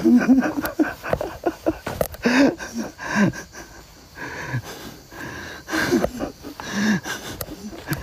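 A man's breathy laughter and breathing, in short puffs with brief sounds of voice between.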